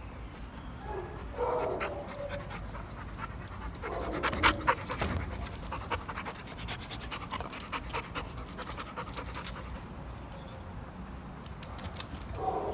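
A bully-breed puppy panting up close while being petted, with short clicks and rustles through the middle.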